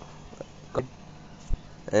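A pause in a man's narration: a low steady hum with faint background noise, a few faint ticks and one short low thump about a second and a half in, then his voice starts again at the very end.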